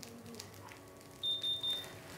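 Ear (tympanic) thermometer beeping: a quick series of high beeps about a second in as it takes a temperature reading in the patient's ear.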